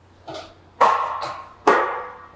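Iron weight plates handled on a plate rack: a light knock, then two loud metal clanks a little under a second apart, each ringing briefly.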